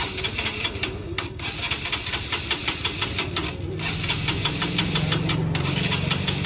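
Honda CB Shine 125's single-cylinder four-stroke engine being cranked on its electric starter, a rapid even clatter with a couple of short breaks, without catching. It is a cold morning start without choke that won't fire.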